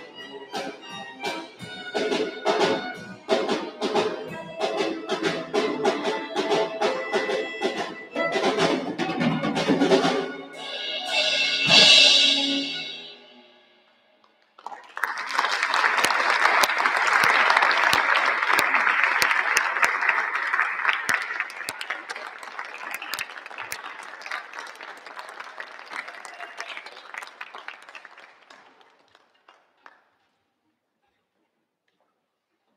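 A student string orchestra of violins, cellos and double bass plays the closing bars of a piece, swelling to a loud final chord about twelve seconds in. After a moment of silence the audience applauds, the applause fading away over the next fifteen seconds.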